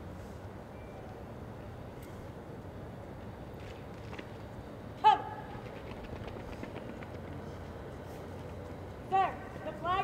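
Steady open-air background noise, broken about halfway through by one loud shouted military drill command, with more shouted commands near the end.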